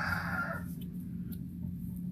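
A bird's held, steady call tails off about two-thirds of a second in, over the steady low drone of a Kubota DC-93 rice combine harvester working in the distance.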